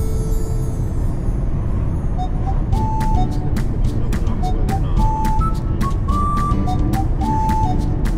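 Steady rumble of a car driving, road and engine noise heard from inside the cabin. About two seconds in, background music with a bright melody and a steady beat comes in over it.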